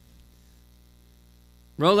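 Faint, steady electrical mains hum through a pause in speech, then a man's voice comes in loudly near the end.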